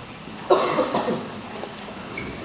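A person coughing close to the microphone: one sharp burst about half a second in, then a smaller one just after.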